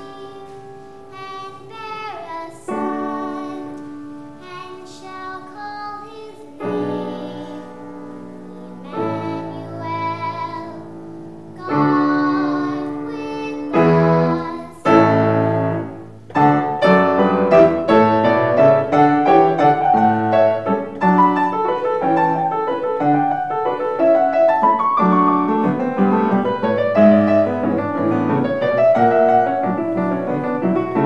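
A young girl singing solo in long held notes over piano accompaniment. From about halfway through, the piano carries on louder in a busy passage of many quick notes.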